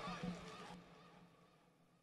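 Faint background noise with a brief low tone about a quarter second in, fading out to near silence.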